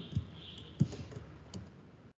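Typing on a computer keyboard: a handful of separate, unevenly spaced keystrokes.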